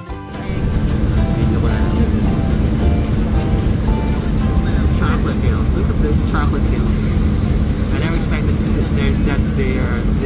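Steady low rumble of a passenger airliner's cabin, with a constant hum and muffled voices of people talking over it.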